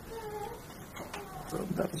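A faint, high-pitched, drawn-out whining call, then a man's voice starting to speak near the end.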